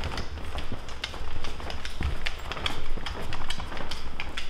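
Footsteps on a hardwood floor: a Rhodesian Ridgeback's claws clicking irregularly, along with a person's shoes stepping as they walk together.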